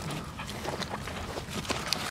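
Shar-pei puppies scampering over grass and dry leaves: quick, irregular rustling steps mixed with short low grunts.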